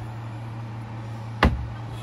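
A steady low hum with a single sharp knock about one and a half seconds in.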